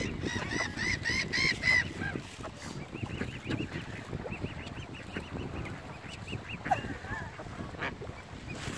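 Mute swan cygnets peeping: a quick run of about six loud, high, arched peeps in the first two seconds, then softer peeps repeating through the middle. A short, sharper call comes a little before the end.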